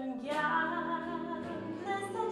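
Big band jazz orchestra playing a slow ballad, its horn section holding rich sustained chords that swell in right after a brief lull.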